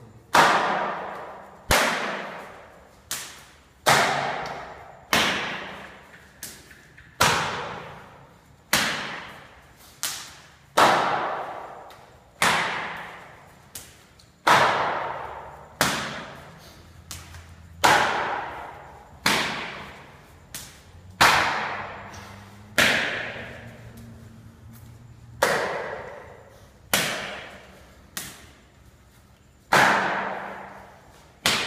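Hand and forearm strikes landing on a student's body in a kung fu body-conditioning drill: sharp slaps and thuds roughly once a second or a little slower, each with a short echo.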